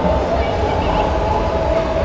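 Busy exhibition-hall ambience: steady crowd noise over a low rumble, with a faint steady hum.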